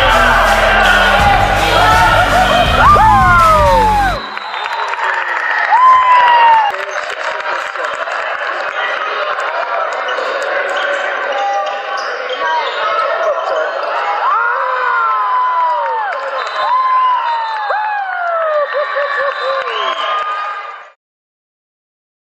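Music with a heavy beat stops abruptly about four seconds in, giving way to the live sound of a basketball game in a gym: shoes squeaking on the court, voices calling out and the ball bouncing. The sound cuts off about a second before the end.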